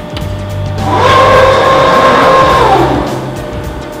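Press brake backgauge drive running as the backgauge travels in to its 50 mm position: a steady motor whine starts about a second in and dies away near the three-second mark.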